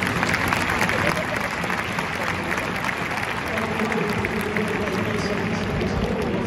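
A large stadium crowd clapping, a dense patter of many hands, strongest in the first few seconds. An echoing public-address voice carries over the clapping.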